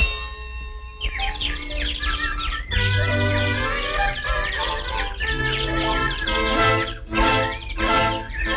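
A metallic clang rings out and fades over the first second, then cartoon orchestral music with twittering bird-whistle chirps plays on: the stock 'seeing birds' sound of a character dazed by a blow to the head.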